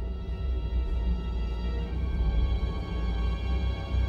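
Suspenseful film score: a deep low drone under steady, held high tones.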